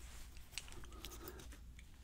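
Faint handling of small lock pins over a plastic pin tray, with one or two light clicks about half a second in, over a low steady hum.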